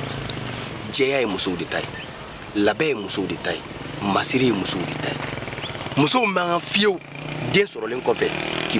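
Insects chirring steadily at a high pitch, under a man talking in short phrases.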